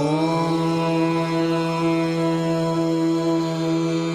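Devotional mantra chanting: a voice holds one long chanted note, sliding up slightly at the start, over a steady drone.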